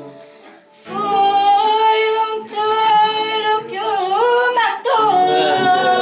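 A woman singing fado with acoustic guitar accompaniment. After a short breath about a second in, she sings held, ornamented lines with vibrato and slides in pitch.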